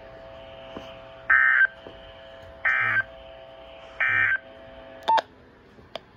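Three short digital data bursts, about 1.3 s apart, from a Motorola handheld radio's speaker: the NOAA Weather Radio end-of-message code that closes the severe thunderstorm warning. A faint steady hum lies underneath, and a short sharp click follows near the end.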